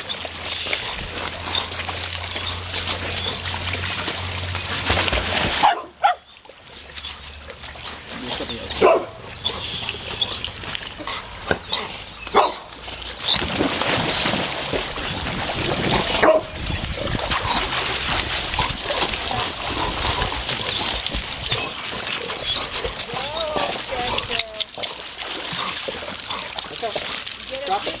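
Several dogs barking and splashing while swimming in a pool, with water sloshing throughout and a brief lull about six seconds in.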